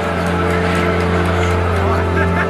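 Background music built on a steady low drone and held tones, with voices mixed in.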